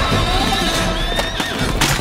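A horse neighing over film-score music, with a sudden loud hit near the end.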